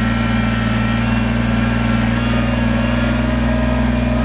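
Kubota compact tractor's diesel engine running steadily at working speed while the tractor reverses and the backhoe bucket curls in, dragging the machine backwards out of deep mud.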